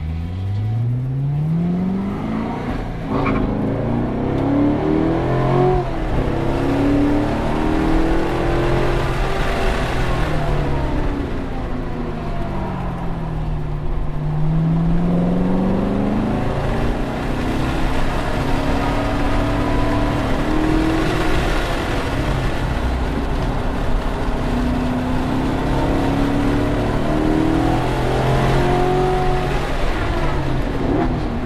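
Chevrolet Corvette C7 Grand Sport's 6.2-litre LT1 V8 heard from inside the cabin, accelerating out onto the track. The engine note climbs steeply at the start, then rises and falls over and over as the car speeds up and slows, dipping lowest about halfway through.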